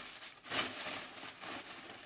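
Rustling from something being handled, with one brief louder rustle about half a second in.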